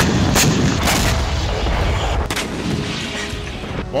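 Gunfire and explosions: a loud blast as it opens, sharp cracks about half a second and a second in and again past two seconds, over a low rumble that slowly fades.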